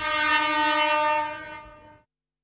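Train horn sound effect: one long, steady blast that fades away about a second and a half in.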